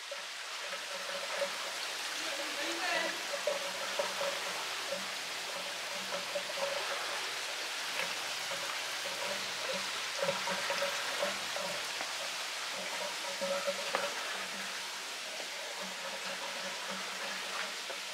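Steady splashing of water running into a koi pond, with faint voices in the distance now and then.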